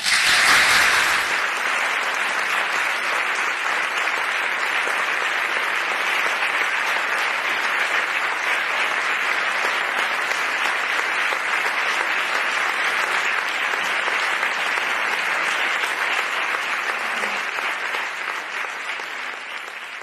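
Audience applauding steadily after a talk ends, the clapping fading away over the last few seconds.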